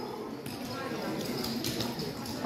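A few faint, scattered light clicks and taps at a low level.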